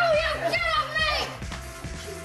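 Boys' voices crying out and yelling in short high-pitched calls while acting out a stage fight, over background music.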